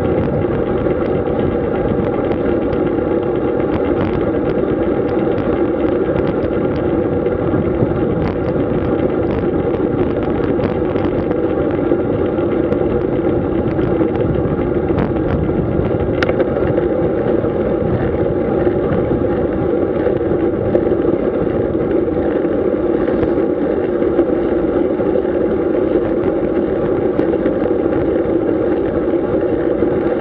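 Steady wind noise on a bike-mounted camera's microphone, mixed with the tyre noise of a road bicycle rolling on asphalt at a steady pace.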